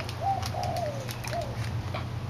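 A dove cooing: three coos in quick succession, the middle one longer and falling in pitch, over a steady low hum.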